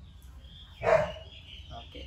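A beagle puppy gives one short, loud bark about a second in.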